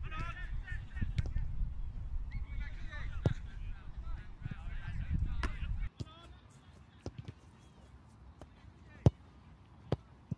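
Wind buffeting the microphone with distant calls on an open field, dropping away about six seconds in; then a football kicked with a sharp thud about nine seconds in and another kick just before the end.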